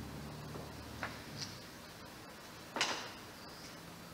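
A quiet pause in a room with a steady low hum, a few faint clicks, and one short breathy noise from the reader about three seconds in.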